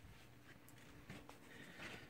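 Near silence: indoor room tone, with a few faint ticks.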